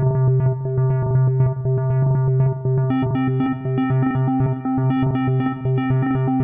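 Omnisphere software synthesizer's arpeggiator playing a repeating sequence of short pitched synth notes, with ratcheted steps split into rapid repeats by a step divider set to fall. About three seconds in, a second, higher note joins the pattern.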